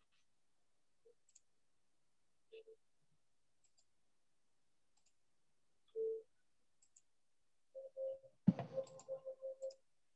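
Mostly quiet, with scattered faint clicks and short blips and a quick run of them near the end.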